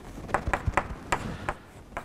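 Chalk writing on a blackboard: a series of about six sharp, irregularly spaced taps as the chalk strikes the board.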